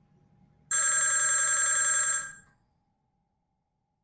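Linphone softphone ringtone signalling an incoming call on the user's extension, placed by the CRM's click-to-call through the Asterisk server. One ring of about a second and a half starts under a second in and stops.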